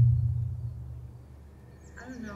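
Low bass drone in the music video's soundtrack, fading away over the first second or so into near quiet.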